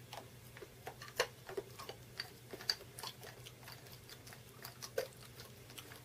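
Someone chewing candy: faint, irregular small clicks and crunches, over a low steady hum.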